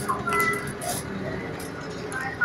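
Inside a moving city bus: steady engine and road hum, with a few brief high-pitched squeaks in the first half second.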